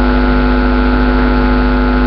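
Steady electrical mains hum from the public-address system: a loud, unchanging low buzz with a string of evenly spaced overtones.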